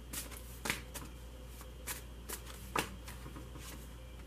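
Tarot cards being handled and laid onto a spread on a wooden table: about a dozen light, irregular card clicks and slaps, the loudest a little before three seconds in.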